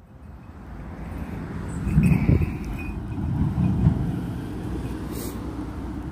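Wind buffeting a phone microphone: a low, rumbling roar that builds over the first two seconds and swells twice.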